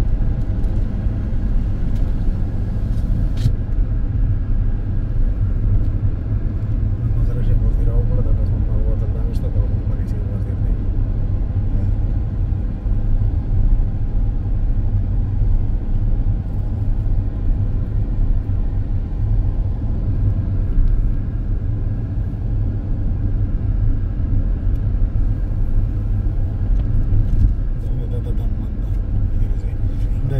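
Steady low rumble of a moving car's engine and tyres, heard from inside the cabin while driving at a constant speed.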